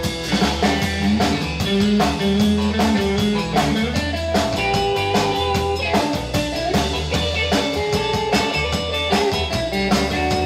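Live rockabilly/honky-tonk band playing an instrumental break: a Fender Telecaster electric guitar plays single-note lead lines over a drum kit keeping a steady beat.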